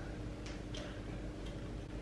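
Quiet room with a low steady hum and a few faint soft clicks.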